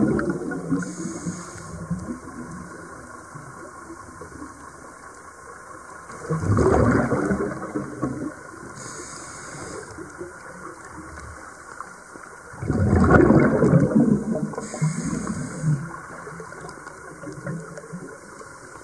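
Scuba diver's regulator breathing heard underwater: rushes of exhaled bubbles about every six seconds, one at the start, one about six and a half seconds in and a longer one about thirteen seconds in. A faint high hiss of inhaling comes between them.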